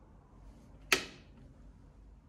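A single sharp knock about a second in as a wood-veneer interior door is pushed open, with quiet room tone around it.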